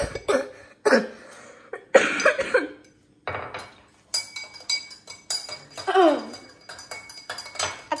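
A metal spoon clinking against a glass while stirring a milkshake, in irregular bursts with a brief pause about three seconds in. Short vocal sounds come about two seconds in and again about six seconds in.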